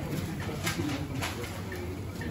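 Kitchen background noise in a busy kebab shop: a steady low hum with a couple of light clinks from the counter.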